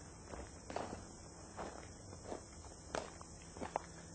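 Footsteps of a person walking through a house, a step roughly every half to two-thirds of a second, with a couple of sharper knocks near the end.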